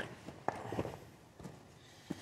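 Faint footsteps and shuffling on a gravel floor, with a sharp click about half a second in and a few light knocks after it.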